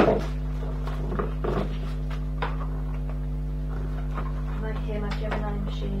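Steady low electrical hum with a sharp knock at the start and a few lighter clicks and knocks of handling in the first couple of seconds. Faint murmured speech comes near the end.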